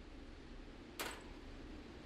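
Quiet room tone, with one short, sharp click about a second in.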